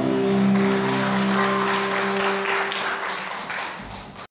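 A band's final held chord on electric guitars and keyboard ringing out and fading away, with applause coming in about a second in.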